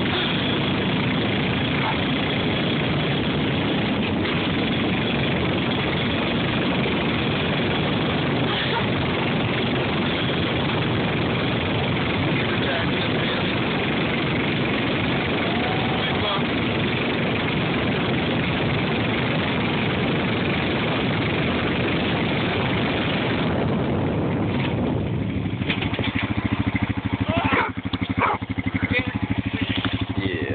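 Four-wheeler engine running steadily under a loud, even rushing noise while towing a sled through snow. About 24 seconds in the rush drops away, leaving the engine's steady low hum at idle, with some knocks and handling noise.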